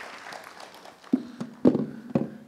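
Audience applause dying away over the first second, then a few dull knocks about a second in, the last and loudest near the end.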